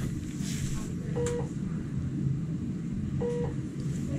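Steady low hum with a short, soft electronic beep repeating about every two seconds.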